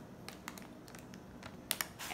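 Faint light clicks and crinkles of plastic-wrapped candy packs being handled on a table, with two sharper clicks near the end.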